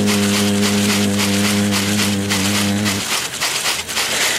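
A man's voice holds one long sung note of an Amazonian icaro. The note ends about three seconds in. A shacapa leaf-bundle rattle is shaken in a quick, even rhythm throughout.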